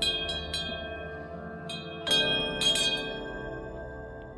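Cowbells worn by grazing cattle clanging irregularly: a quick cluster of strikes at the start and another louder cluster about two seconds in, each ringing on and fading, over a steady bed of ringing bell tones.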